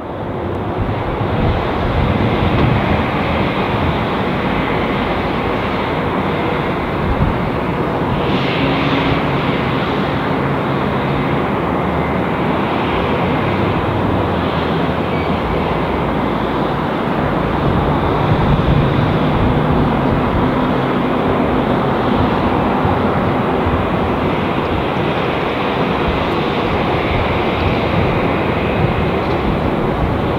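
An Airbus A350's two turbofan engines at takeoff thrust as the jet rolls down the runway and lifts off: a steady, continuous jet roar.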